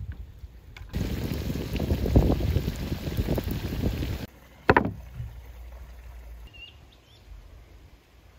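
Eggplant slices deep-frying in hot oil in a cast-iron pot: a loud sizzle with dense crackling that starts about a second in and cuts off suddenly about four seconds in. A single sharp knock follows, then quiet outdoor background with a faint short chirp.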